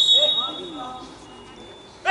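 Referee's whistle blown in one long blast for a free kick, loudest at the start and fading out within about a second, with players' voices calling around it.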